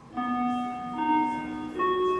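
A short bell-like chime melody: three ringing notes struck about a second apart, each sustaining over the next.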